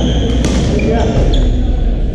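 Sports shoes squeaking on a wooden gym floor and sharp racket hits on a shuttlecock during a badminton rally: a squeak right at the start, a hit about half a second in and another about a second in, then a second squeak. Underneath runs the echoing chatter of a busy sports hall.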